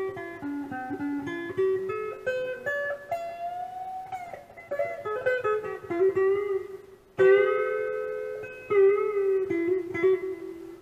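Telecaster-style solid-body electric guitar played through an amplifier: picked single-note lead lines with string bends. There is a short break about seven seconds in, then a long ringing note.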